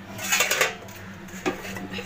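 Stainless steel pot lids and pots clattering as the lids are handled and lifted off: a jangling metallic clatter about a third of a second in, then a single lighter clink later on.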